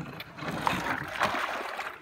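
A large alligator gar released over the side of a kayak, splashing and churning the river water for about a second and a half.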